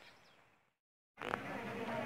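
About a second of dead silence at an edit, then a steady, even background buzz.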